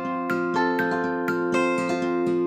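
Background music: a plucked string instrument picking notes about four times a second over held chord tones, in a light, steady rhythm.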